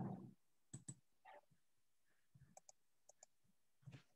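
Near silence broken by faint clicks: a soft low thump right at the start, then about eight short, sharp clicks, several in quick pairs.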